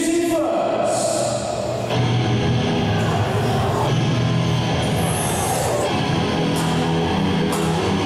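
A wrestler's entrance music, a loud rock track, playing over the hall's PA. It builds up fully about two seconds in.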